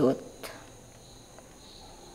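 Faint, steady high-pitched chirring of crickets in the background, heard once a woman's spoken line ends at the very start.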